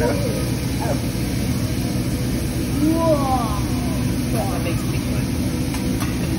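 Steady restaurant din at a teppanyaki griddle: a continuous low rumble with food sizzling on the hot steel plate. Faint voices of other diners run underneath.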